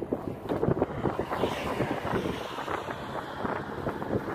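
Wind buffeting a phone microphone, heard as a continuous, irregular crackling rustle.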